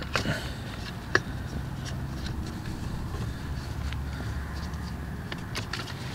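Faint handling noises as a metal pedal cover is tried over a car's rubber brake pedal pad: one sharp click about a second in and a few light taps near the end, over a low steady hum.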